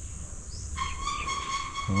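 An animal call held at one steady high pitch, starting about three-quarters of a second in and lasting about two seconds, over a low background rumble.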